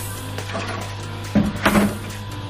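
Water from a watering can's sprinkler rose falling onto a tub of damp soil mix, over background music, with a few sharp knocks about one and a half seconds in.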